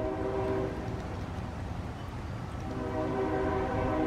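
Train horn sounding two long chords, the first ending about a second in and the second starting near three seconds, over a low rumble.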